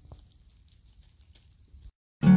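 Faint, steady, high-pitched chirring of insects, cutting off suddenly near the end.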